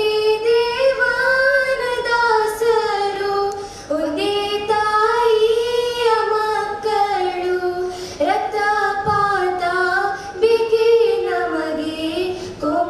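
Girls singing a song together in unison into microphones, with long held notes that glide gently up and down, broken by short breaths every few seconds.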